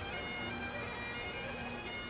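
Bagpipes playing in the background: a steady drone under held notes.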